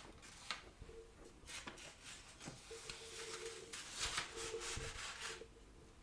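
Large dressmaker's shears cutting through fabric on a table, a series of faint rasping strokes as the blades close through the cloth.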